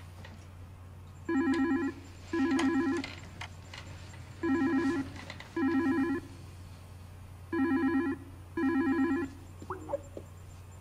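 Incoming video-call ringtone on a computer, ringing in three double rings: two short warbling rings, a pause, and again. A brief rising blip follows near the end.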